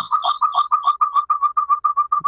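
A rapid run of short, identical beeps at one steady pitch, about eleven a second, cutting in unexpectedly.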